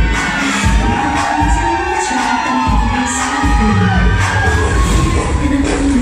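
Dance music with a steady bass beat playing loudly over a club sound system, with the audience cheering and screaming over it.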